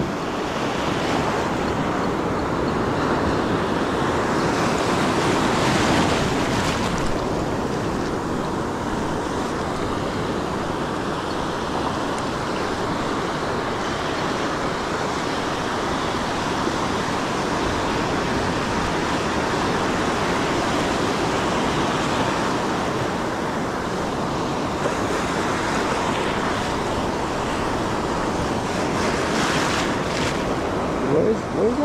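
Ocean surf breaking and washing up the beach, a steady rush of water with wind buffeting the microphone. The wash swells louder a few seconds in and again near the end as waves come through.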